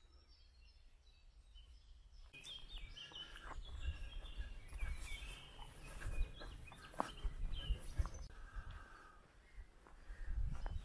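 The first two seconds are near silence. Then outdoor ambience comes in: small birds chirping in short, repeated calls over a low rumble, with a few sharp ticks.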